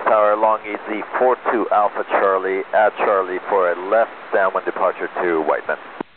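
A voice transmitting over an air traffic control radio frequency, narrow and tinny, cutting off just before the end and leaving a steady radio hiss.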